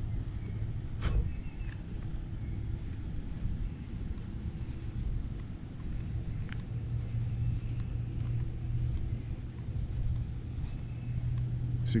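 Low, steady hum of a vehicle rolling slowly along a paved road, engine and tyre noise, with a single sharp click about a second in.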